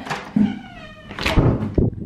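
A door being pushed open: a wavering hinge squeak in its first second, followed by a few knocks from the door and latch.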